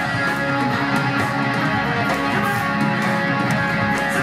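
Live rock band playing an instrumental passage: electric guitars leading over bass and drums, with no singing.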